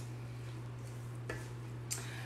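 Faint stirring of a chunky chicken, cheese and vegetable filling with a scraper in a stainless steel mixing bowl, with a couple of soft scrapes near the end, over a steady low hum.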